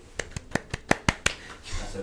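A quick run of about eight sharp clicks or taps within about a second, the loudest two near the middle.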